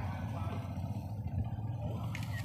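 A vehicle engine running steadily, a low even rumble with no change in pitch.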